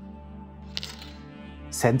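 Canon EOS 550D DSLR's mirror and shutter firing once, a single sharp click a little under a second in, over a steady music bed. Speech begins near the end.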